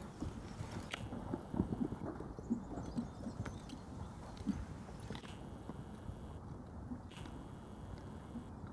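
Horse trotting on a sand arena surface: soft, muffled hoofbeats in an uneven run, with a few light clicks.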